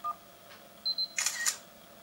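A Nexus S phone's camera app playing its shutter sound through the phone's speaker: a short tone at the start, two quick high beeps a little under a second in, then a brief synthetic shutter click.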